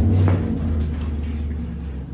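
A low, steady hum of several tones sets in suddenly and holds on.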